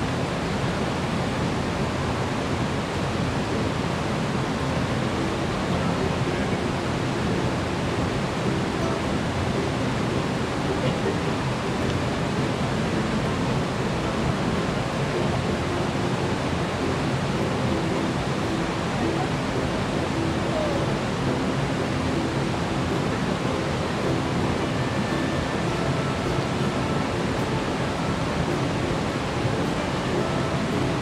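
Rocky mountain stream rushing steadily over boulders and small cascades.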